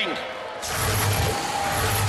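Robot-combat arena sound cutting in suddenly about half a second in: an even hiss-like wash of noise with a low hum that comes and goes, from the robots' machinery.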